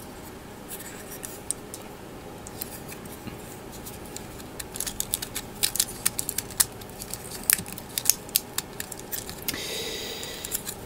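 Small plastic model-kit parts clicking and rubbing against each other as they are handled and fitted together by hand: a few scattered clicks at first, then a quicker run of clicks in the second half.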